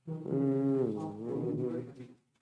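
A man's voice holding one long, drawn-out tone without words, its pitch dipping and bending about a second in before carrying on.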